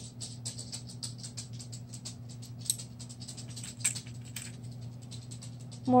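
Rapid, fairly even light ticking, about six or seven ticks a second, over a steady low electrical hum.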